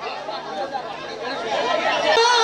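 Several people talking over one another: a murmur of chatter, with no music playing.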